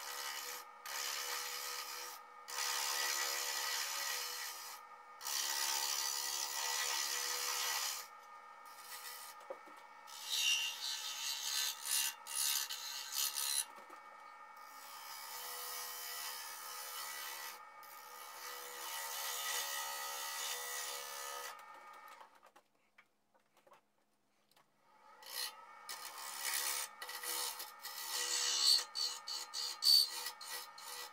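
Wood lathe running with a turning tool cutting the outside of a small wooden box held in the chuck. The cuts come as scraping bursts of a few seconds with short pauses between, over a steady motor whine. About three-quarters of the way through it falls nearly silent for a few seconds, then near the end it resumes as quick, rapid strokes, the footage there running at four times speed.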